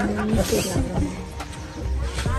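Background music with a held note at the start, mixed with people's voices.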